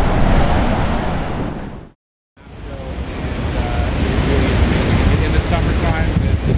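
Steady roar of the Horseshoe Falls' water crashing into the plunge pool, mixed with wind buffeting the microphone. It fades out about two seconds in, drops to a short silence, then a similar steady rush of water and wind comes back.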